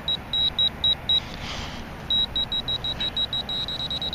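GP-Pointer handheld metal-detecting pinpointer beeping at a high pitch as its tip is worked in the hole: a run of short beeps, a pause about a second and a half in, then beeps that come faster near the end as it closes on the buried target.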